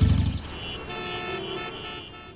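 City traffic ambience with vehicle horns honking, steady held horn tones over a faint hum of traffic. It follows loud background music with a heavy bass that cuts off about half a second in.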